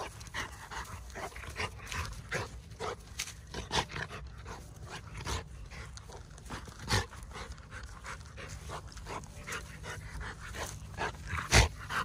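A Rottweiler panting hard while it noses and mouths a ball, with irregular short scuffs and two louder knocks, one about seven seconds in and a louder one near the end.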